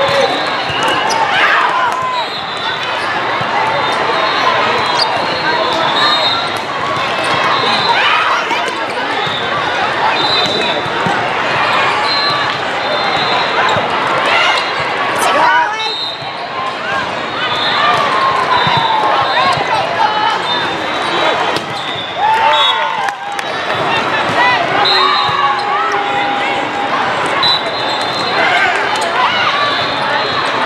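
Indoor volleyball rally in a large hall: ball contacts and bounces on the court over a steady din of players calling and spectators chattering and cheering, with sharp impacts scattered throughout.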